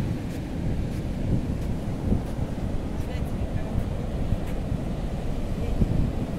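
Steady rumble of ocean surf, with wind buffeting the microphone.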